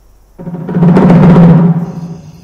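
Dramatic film-score drum swell, like a timpani roll, with a deep rumble: it rises from about half a second in, holds loud, and fades away near the end.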